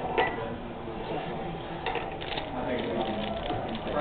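A metal spoon clinking and scraping on a small plate, with sharp clinks just after the start and again about two seconds in, over people talking.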